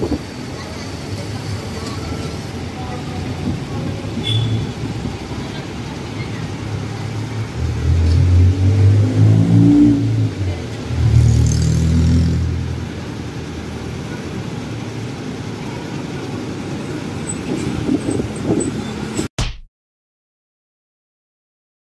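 City street traffic. A van passes close with its engine rising in pitch as it accelerates, loudest from about 8 to 12 seconds in, over a steady hum of traffic. The sound cuts off abruptly just before the end.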